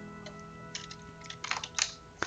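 Computer keyboard keys pressed in quick clusters, about a second in and again near the end, as keyboard shortcuts are typed. Faint sustained tones sit underneath.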